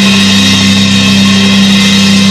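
Live heavy rock band music with a drum kit: a low note held steady under a wash of cymbals.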